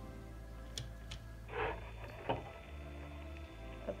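Soft background music of steady held tones over a low bass line, with a couple of brief rustles of cotton fabric being handled about halfway through.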